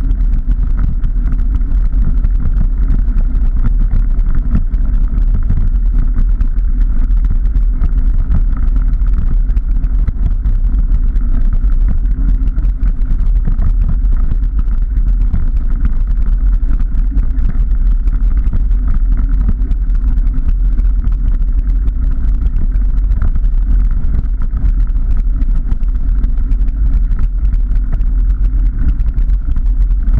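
Steady, loud low rumble of wind buffeting the camera microphone and a knobbly bike tyre rolling over a rough gravel and mud trail.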